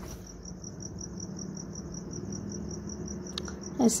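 An insect chirping steadily in the background, a high pulse repeating about six to seven times a second over a faint low hum.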